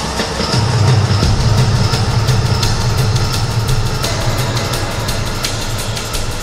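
Downtempo psydub electronic music: a rising synth sweep at the start gives way to a deep, sustained bass line under a fast, ticking hi-hat pattern.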